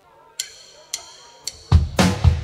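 A drummer's count-in of three sharp clicks about half a second apart, then the full rock band comes in loudly near the end with drum kit, bass and guitars.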